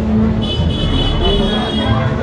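Street procession din: a steady low engine rumble with crowd voices and music mixed in, and a high steady tone over it from about half a second in until near the end.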